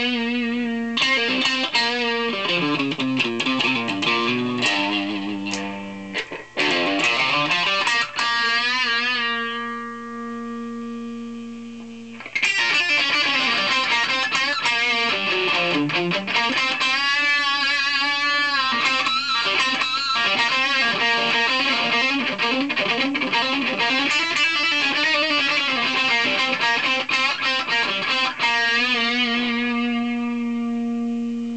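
Distorted electric guitar, a Washburn N4, played through a Carl Martin PlexiTone overdrive pedal with its drive channel on, into a Marshall JCM800 amp. It plays a lead line of held notes with wide vibrato and runs. A held note fades out, and a loud passage comes back in about twelve seconds in.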